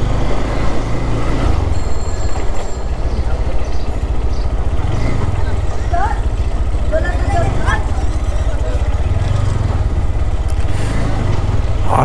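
GPX Demon GR165R sport bike's 165 cc engine running steadily at low road speed, heard from the rider's seat as a continuous low rumble. A few brief faint rising sounds come about halfway through.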